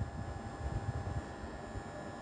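Background room noise with no speech: a low, uneven rumble under a faint steady hum.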